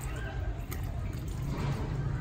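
Water running from a garden hose, splashing faintly into a plastic bucket and over a toy truck, under a steady low rumble.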